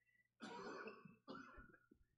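A faint cough: two short, rough bursts in quick succession, the first one longer.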